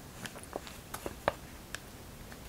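A few light, scattered clicks and taps from small objects being handled, the loudest a little past the middle.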